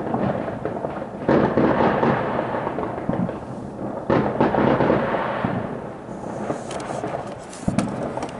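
Fireworks going off: sudden booms about a second and four seconds in, each trailing off slowly, then sharp crackles and a short bang near the end.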